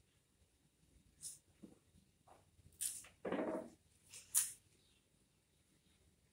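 A few short rustles as cut flowers and leaves are handled and set into an arrangement. The fullest one comes about three seconds in.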